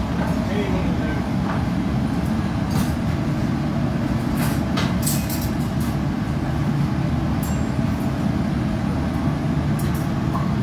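Steady low roar of a glassblowing hot shop's gas-fired furnaces and burners, with a few light clicks about three to five seconds in.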